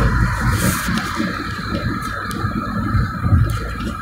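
Inside the cabin of a 2011 Toyota Prius cruising at highway speed, about 106 km/h: a steady low road and tyre rumble with a band of hiss above it.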